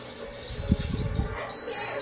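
Instant Pot's electronic beeper giving high-pitched beeps: two short ones, then a longer beep near the end, as the slow cook program is set. A low muffled rumble sounds in the first half.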